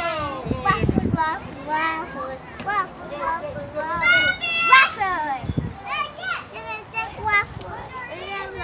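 A young child's high-pitched voice chattering in short unclear bursts, with one longer drawn-out call about four seconds in.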